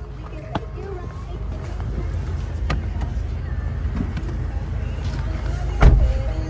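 Someone climbing into a car: handling noise and a low rumble, a few sharp clicks, and a heavy thump near the end.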